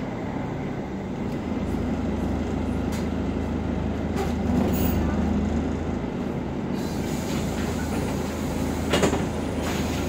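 Cabin sound of a Volvo B10BLE city bus under way: its six-cylinder diesel and ZF automatic gearbox drone steadily, growing louder about two seconds in and easing about six seconds in. A few short rattles from the body come near the end.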